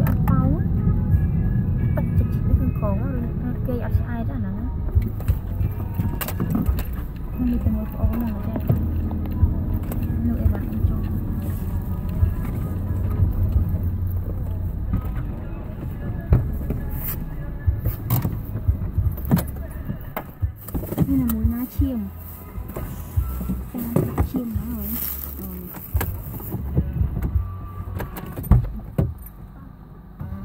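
Car engine and road rumble heard from inside the cabin, growing quieter about halfway through as the car comes to a stop and idles. Faint voices and music run underneath, with scattered small clicks near the end.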